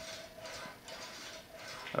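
Homemade gravity wheel spinning freely, the pulley wheels on its long slide arms running: faint, with soft ticking.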